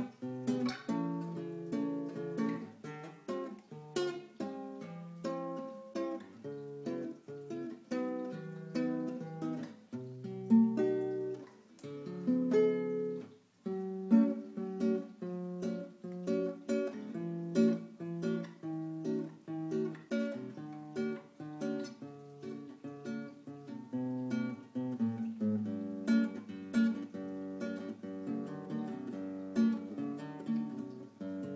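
1981 Di Giorgio nylon-string classical guitar, Brazilian rosewood body with a spruce top, played fingerstyle: plucked chords and melody notes, with a brief pause about 13 seconds in.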